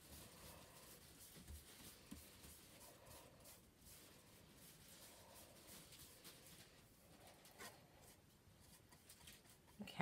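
Near silence, with faint strokes of a paintbrush spreading paint over wooden boards.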